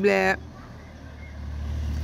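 A small car driving along the street below, its low rumble growing steadily louder as it approaches.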